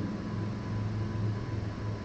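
Steady low hum with an even background hiss and a faint thin high tone: the recording's room and electrical noise.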